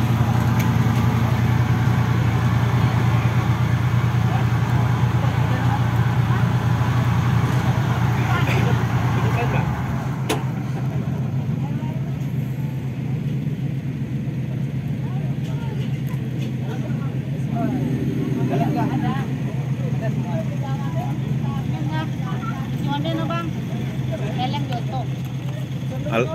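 Offroad buggy's engine running steadily at idle; about ten seconds in the idle settles lower and quieter, with a single click just after.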